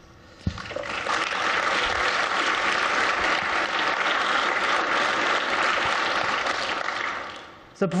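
Audience applauding, starting about half a second in, holding steady for several seconds and dying away near the end.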